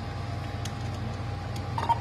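Steady low hum of room background with a thin, faint steady tone above it and a single light click about two-thirds of a second in.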